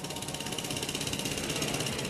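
Construction-site machinery running with a rapid, even rattle of about a dozen beats a second.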